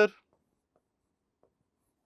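A man's word trailing off at the start, then near silence broken by two faint taps of a pen writing on the board.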